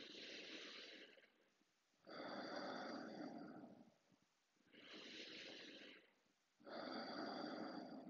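A man's slow, deep breathing: two full breaths, each an inhalation followed by a longer, lower exhalation with quiet pauses between. These are deliberate breaths in a set of ten, drawn from the belly up into the chest.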